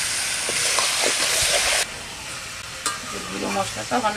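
Mutton pieces with spice powders frying in hot oil in a wok, being stirred with a metal spatula. A loud sizzle cuts off suddenly about two seconds in, after which the frying is quieter, with a few short scrapes of the spatula and a voice near the end.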